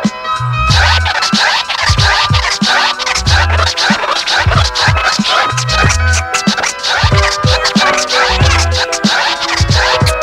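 Hip-hop instrumental beat with turntable scratching over it: drums and a repeating deep bassline, the track starting right after a moment of silence.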